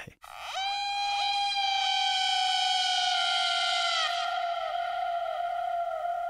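Electronic music cue: a single sustained, high synthetic tone with a bright stack of overtones. It swells in just after the start, and in its second half it wavers with small repeated downward slides.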